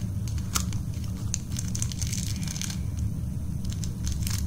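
Plastic packaging crinkling and tearing as a Shopkins blind basket is opened by hand: a run of scattered crackles and rustles over a steady low hum.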